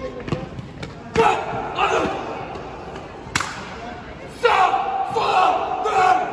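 Drawn-out shouted military drill commands from an honour guard, two long calls about a second in and about four and a half seconds in, with sharp drill knocks on the marble floor, the loudest about three seconds in.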